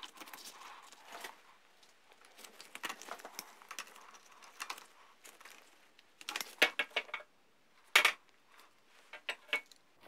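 Pliers gripping and bending a steel bracket beside a motorcycle's drive chain: quiet, scattered metallic clicks and light scrapes, with a quick run of sharper clicks about two-thirds of the way through and one more sharp click soon after.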